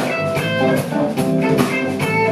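Live rock band playing an instrumental: electric guitar over bass guitar and drum kit, with steady drum and cymbal strokes.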